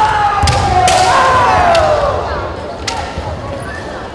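Kendo competitors' kiai: a long drawn-out shout sliding slowly down in pitch over the first two seconds, overlapped by the opponent's shout. Sharp clacks of bamboo shinai and thuds of feet on the wooden floor sound through it.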